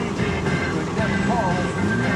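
Broadcast audio: music and a voice, over a steady low rumble.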